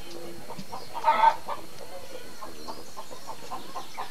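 A chicken calling once, loud and short in two quick parts about a second in, over faint scattered chirping in the background.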